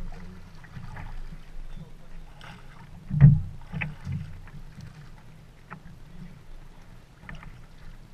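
Kayak paddling heard from a camera mounted low on the hull: paddle strokes splashing and water washing along the boat, over a steady low rumble. A single loud sharp knock comes about three seconds in.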